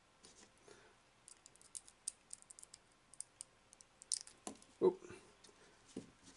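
Faint, scattered light clicks and ticks of small plastic parts and a screw being handled by fingers while an action-figure display stand is put together.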